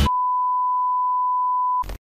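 A steady, pure electronic beep tone held for nearly two seconds, cutting off sharply near the end, followed by a very brief burst of noise.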